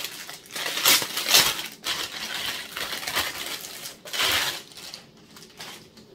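Plastic packaging crinkling and rustling as a package is handled and unwrapped, in several loud bursts that die away near the end.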